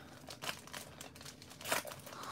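Faint crinkling of a 1991 Score baseball card pack's wrapper being torn open and pulled apart by hand, a little louder near the end.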